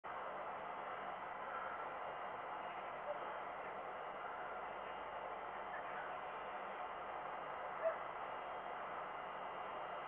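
Steady outdoor background hiss picked up by a webcam microphone, with two faint short sounds, one about three seconds in and one near eight seconds.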